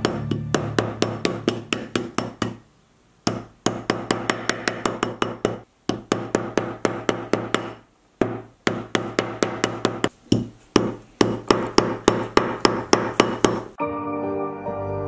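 Rawhide mallet tapping a metal ring on a steel ring mandrel, quick even blows about five a second, each with a short metallic ring. The taps come in four runs with brief pauses between them, shaping the ring round on the mandrel.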